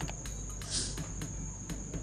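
Faint, steady, high-pitched chirping of crickets, a continuous trill made of rapid even pulses.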